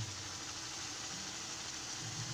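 Steady low hiss with a faint hum from a lit gas burner under a kadhai of simmering tomato sauce.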